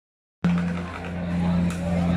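The sound cuts out completely for about the first half second, then returns as a steady low hum under crowd noise. Beiguan processional music swells back in toward the end.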